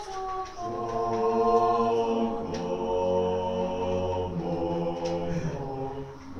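Mixed choir of men and women singing in long held chords.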